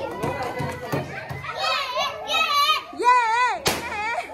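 Young children shouting and cheering excitedly, with one long, wobbling high-pitched call near the end. A single sharp crack sounds just before the end.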